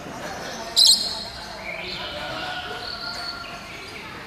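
Caged rainbow lorikeet calling: one short, piercing shriek about a second in, the loudest sound, followed by thinner high rising calls. Voices murmur in the background.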